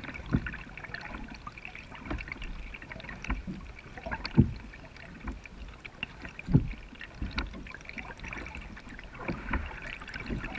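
Kayak paddle strokes in calm river water: a soft dip and splash about every two seconds, with water trickling and dripping off the blades in between.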